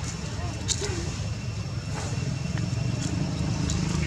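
A steady low motor hum runs throughout, with faint wavering voice-like sounds and a sharp click about a second in.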